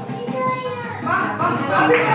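Several people talking and calling out at once, with a young child's voice among them, grows busier about a second in.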